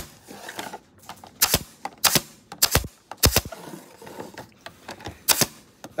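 Pneumatic TS-D58 flexi point driver firing flexible points into a picture frame's rebate to lock the backboard: five sharp shots at uneven intervals, with a longer pause before the last.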